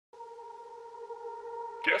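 A held electronic chord of a few steady pitches that slowly swells, opening an Afrobeats instrumental. Near the end, a short spoken voice tag cuts in.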